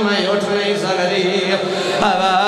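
A man's voice chanting a mournful majlis lament in long, wavering held notes.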